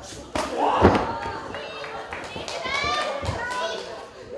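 Strikes landing in a pro-wrestling ring: a sharp slap about a third of a second in, then a heavier thud just under a second in. High-pitched yelling follows for a couple of seconds.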